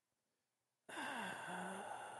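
Silence, then about a second in a man lets out a long, breathy voiced sigh whose pitch falls and then holds, as he mulls over a hard choice.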